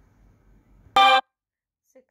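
A single short, loud, steady horn-like tone about a second in, lasting about a quarter of a second and cutting off abruptly into dead silence.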